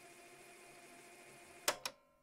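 Faint steady hum of a few held tones at the tail of an experimental ambient track, broken near the end by two sharp clicks in quick succession.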